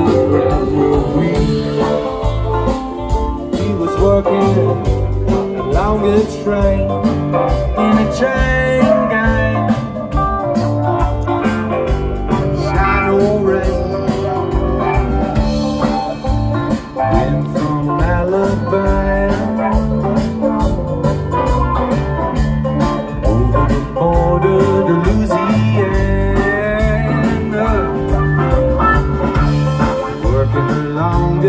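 Live twang-funk band playing with a steady beat: electric guitars, bass, drums and keyboard.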